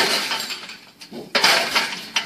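Tubular steel livestock gate panels clanging and rattling as a bison shoves against them and forces its way through, in two crashing bursts: one at the start and another about a second and a half in.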